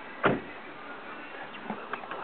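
A car door shutting with a single heavy thud a quarter second in, heard from inside the cabin.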